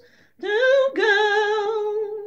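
A woman singing a traditional folk ballad unaccompanied: a brief pause for breath, then held, wavering notes of the next line.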